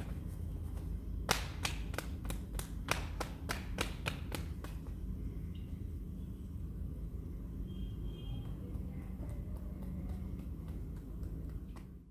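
Open-hand slaps on a person's arm during a massage: a quick run of about a dozen sharp slaps, roughly three or four a second, starting about a second in and stopping about five seconds in, followed by a few fainter pats.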